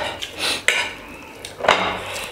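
Metal fork scraping and clinking against a ceramic plate as noodles are twirled up, with a few sharp clinks, the loudest near the end.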